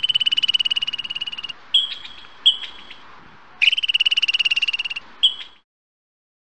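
Squirrel chattering: a rapid, buzzy pulsed trill lasting about a second and a half, two short chirps, then a second trill of about a second and a half ending in one more short chirp.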